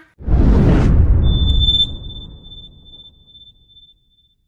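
Outro sound effect on the end card: a loud whoosh with a deep rumble that fades over about two seconds, with a single high ringing tone that comes in about a second in and fades out slowly.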